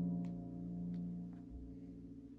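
Background music from a cartoon score: a held chord that slowly fades away.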